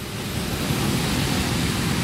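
Road traffic passing on a wet street: a steady rush of tyre noise and engines that swells slightly about half a second in.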